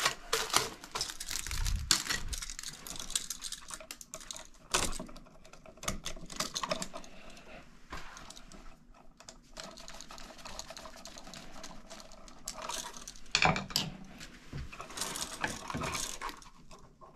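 Irregular small clicks, scrapes and rustles of gloved hands working a wall receptacle with an insulated screwdriver, loosening its terminal screws and wires and pulling it free of the box. There is a louder flurry of clicks about five seconds in and another near the end.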